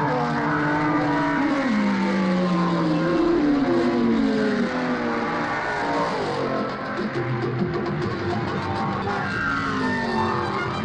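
Racing sports-prototype engines running hard as the cars pass, their pitch sweeping down several times in the first half, mixed with music.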